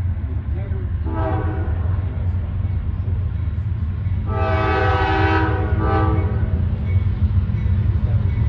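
Nathan K5LA five-chime air horn on a CSX GE CW44AH locomotive sounding for a grade crossing. It gives a short blast about a second in, then a longer one from about four to six seconds, over the steady low rumble of the approaching train.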